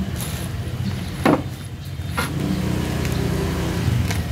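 Steady low rumble of road traffic, with a sharp knock about a second in and a smaller one about two seconds in. Screws rattle in a small plastic bag being handled near the end.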